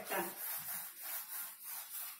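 A handheld whiteboard eraser rubbing across a whiteboard in repeated wiping strokes, about two a second.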